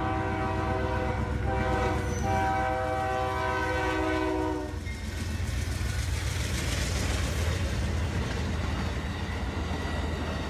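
A train's multi-tone air horn sounds in blasts for the grade crossing over a low locomotive rumble, the last blast long and stopping about five seconds in. Then the train rolls past close by, with loud wheel-on-rail noise.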